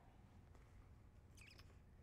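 Near silence: faint room tone, with one brief faint high-pitched squeak about one and a half seconds in.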